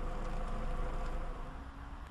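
A car engine running steadily at low revs, fading away over the second half.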